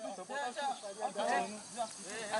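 Several men's voices talking over one another in the background, with a steady faint hiss underneath.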